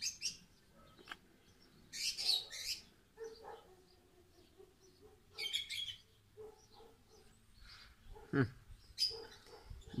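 Birds chirping in short bursts, three times, over a quiet background.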